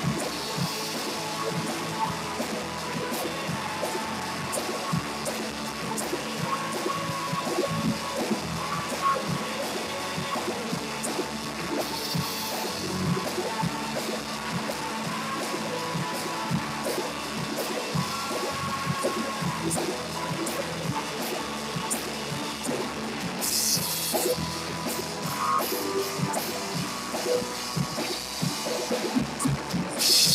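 A church worship band playing live, a drum kit keeping time under sustained instrument and vocal tones.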